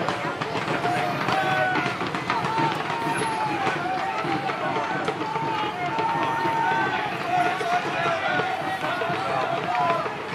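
Many voices shouting and yelling at once, with drawn-out cries overlapping each other throughout. This is the din of re-enactors during a pike-and-musket battle melee.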